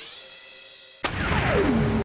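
Electronic intro-logo sound effects: a rising synth sweep fades away, then about halfway through a sudden loud hit comes with a falling pitch glide that settles on a low held tone and cuts off suddenly.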